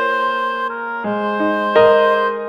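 Instrumental background music with held notes that change about once a second.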